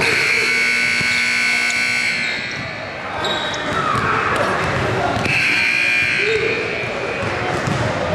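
A gym buzzer sounding a long, steady blare for about two seconds, then again a few seconds later, echoing in the hall over basketballs bouncing on the hardwood court.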